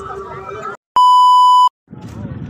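Background voices and outdoor ambience cut off abruptly, then a single loud, steady electronic beep of just under a second, set between two gaps of dead silence: an edited-in bleep tone at a cut between clips.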